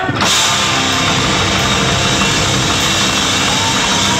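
Live metalcore band kicking into a song: electric guitars and drum kit come in together just after the start and play on loudly.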